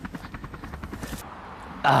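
Camera drone's propellers buzzing, a steady pulsing hum.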